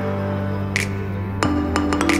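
Background music: held chords with a few sharp percussive strikes, one of them about one and a half seconds in, where the chord changes.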